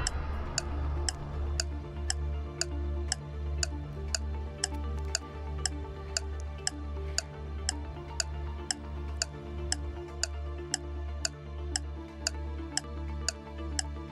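Game-show countdown music: a clock-like tick about twice a second over a pulsing low bass, timing the contestant's 20-second answer period.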